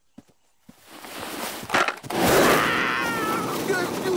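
A few soft cartoon footsteps, then a rising whoosh that turns into a loud, steady rolling rush about two seconds in: a skateboard carrying a man downhill. A man's wavering cry rides over the rush near the end.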